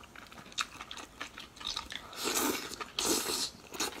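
Close-miked chewing of spicy sauced enoki mushrooms, with many small wet clicks and smacks. Two louder, longer bursts of mouth noise come a little past halfway.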